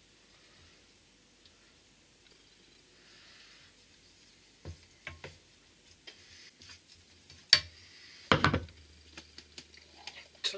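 Gravy simmering faintly in a frying pan, then a wooden spatula stirring and knocking against the pan in scattered sharp clicks. The loudest knocks come about two-thirds of the way through, as a ceramic bowl is set down on a wooden chopping board.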